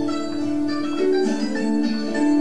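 Recorded French folk dance music for a branle, led by a psaltery: plucked string notes that ring on and overlap in a steady, lilting tune.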